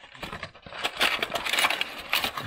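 Cardboard slot-car box being opened and its black plastic insert tray pulled out: card and plastic rustling and scraping, with small clicks, loudest in the second half.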